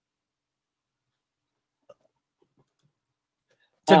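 Near silence, with one faint click about two seconds in; a man starts speaking right at the end.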